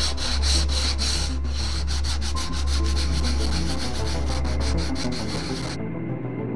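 Sandpaper on a hand sanding block rubbed back and forth over bare wood on a newel post, in quick even strokes several times a second; the strokes stop shortly before the end.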